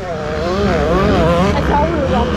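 Dirt bike engines revving up and down over a steady low rumble, the pitch rising and falling several times in the first second and a half.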